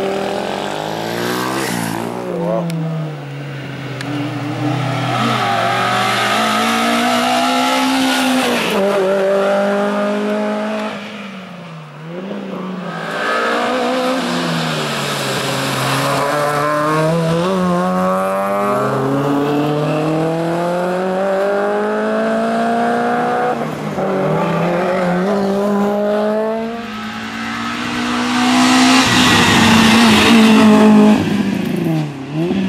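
Small racing hatchback's engine revving hard through a cone slalom. Its pitch climbs again and again and then falls away sharply at each shift or lift for the chicanes, with a clear dip about twelve seconds in. It is loudest at the very end as the car passes close.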